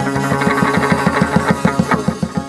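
Chầu văn ritual music: a plucked string instrument playing a fast, evenly repeated run of notes, about thirteen a second, on one low pitch with brighter notes above.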